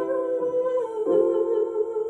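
A woman humming a slow melody without words, holding each note and stepping to the next about every half second to a second.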